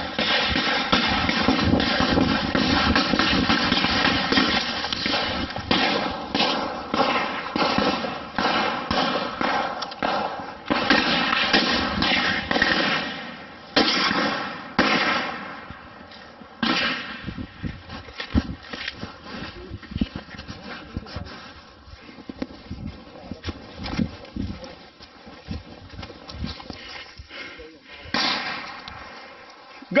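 Scattered gunshots: irregular sharp cracks, thickest in the first half and thinning out later, under muffled voices.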